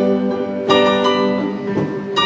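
Live slow blues: a Gibson ES-335 electric guitar plays an instrumental fill of held, ringing notes between sung lines, a new note struck about a third of the way in, over keyboard backing.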